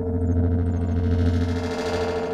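Live electronic music from modular synthesizers: a steady held mid tone over a dense low bass drone, with small high chirping blips early on. A hiss swells in the upper range near the end.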